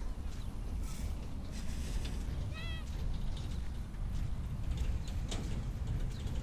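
Footsteps on sand as someone walks along a beach, over a low steady rumble. About two and a half seconds in, one brief pitched call sounds.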